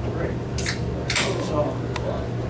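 A metal baseball bat cracks sharply against a pitched ball about half a second in, followed by a second, longer sharp noise about half a second later, over a steady background hum and crowd voices.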